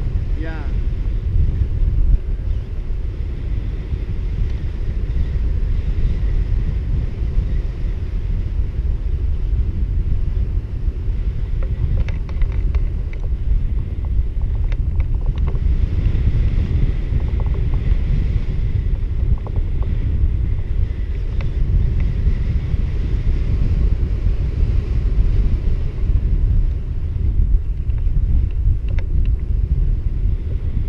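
Airflow of a paraglider in flight buffeting the camera's microphone: a steady low wind rumble.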